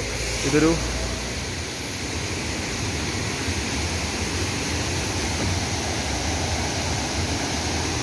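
Steady rushing of a waterfall tumbling over rocky tiers, an even noise without breaks.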